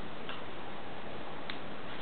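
Steady hiss of recording noise, with two faint, short clicks: one about a quarter second in, one about a second and a half in.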